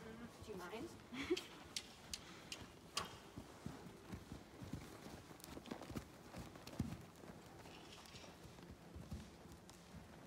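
Horse moving on sand arena footing: quiet, irregular hoofbeats with scattered soft clicks, and a faint voice briefly in the first second or so.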